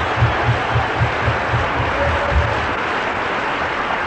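Large audience applauding, a steady wash of clapping that begins to taper off near the end.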